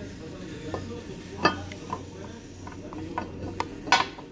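Several light, sharp clicks and taps scattered over a low steady hum, the loudest about a second and a half in and another near the end. There is no die grinder or other power tool running.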